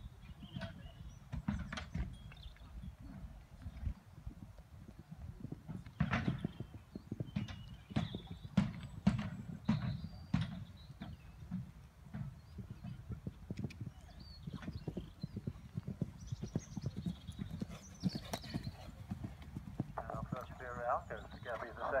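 Horse's hooves thudding on a sand arena in an irregular run of beats as it goes round a show-jumping course. A man's announcing voice comes in near the end.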